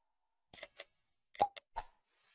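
Animated subscribe-button sound effects. A bell-like notification chime rings about half a second in and fades, then two short mouse-click sounds follow near the end.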